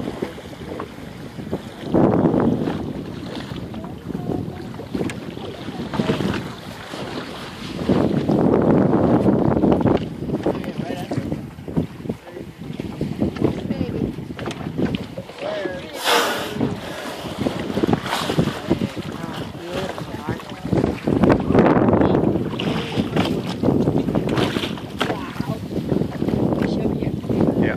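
Gusty wind buffeting the microphone on an open boat on the water, swelling and fading every few seconds, with one short sharp hiss about two-thirds of the way through.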